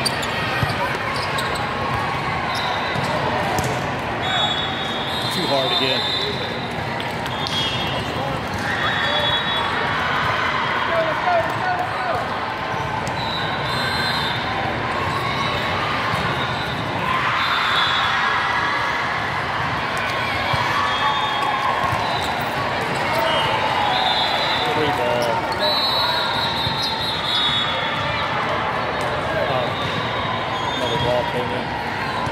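Indoor volleyball match: a steady murmur of crowd and player voices, with the thuds of the ball being hit and short, high squeaks of athletic shoes on the court floor recurring throughout.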